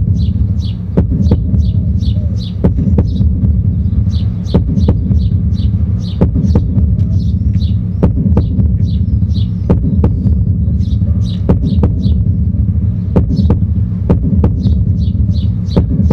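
A loud, low, steady throbbing hum fills the minute of silence. Birds chirp repeatedly above it, and there are a few scattered clicks.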